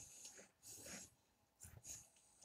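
Faint noisy breaths through the nose, three short ones, while chewing a mouthful of food.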